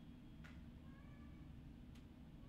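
A domestic cat meowing faintly in the background: one drawn-out call about a second long, starting just under a second in, preceded by a faint click.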